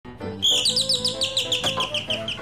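Electric doorbell ringing in a fast, high trill, starting about half a second in as the button is pressed.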